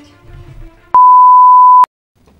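A steady, loud, single-pitch test-tone beep, the kind played over color bars to mark a 'technical difficulties' break, starts about a second in, lasts just under a second and cuts off abruptly, with a click at each end. Faint background music comes before it.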